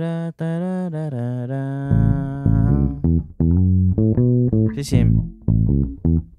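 A man wordlessly sings a melodic phrase for about the first three seconds. Then he plays a run of short, separate plucked notes on an electric bass guitar.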